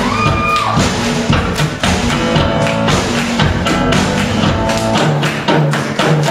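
Live instrumental on a hollow-body electric archtop guitar over a steady drum beat. Near the start a held high guitar note slides down in pitch, then the playing carries on in rhythm.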